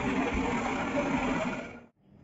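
The CT gantry rotor of a GE Discovery PET/CT scanner spinning at speed with its covers off, a steady, dense mechanical whir that fades away just before the end.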